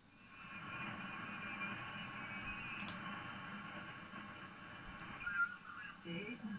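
Kenwood TS-870 HF transceiver's receiver audio, a steady hiss of band noise with faint snatches of off-tune signals as it is tuned down through the 40-metre band. A brief stronger signal snatch comes near the end, and a single mouse click about three seconds in.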